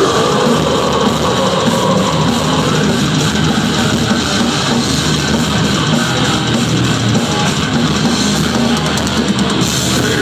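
A live metal band playing loud, dense and without a break: electric guitar over a drum kit.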